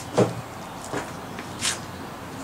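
A few short knocks and scuffs, the loudest about a fifth of a second in, with a brief hiss near the end.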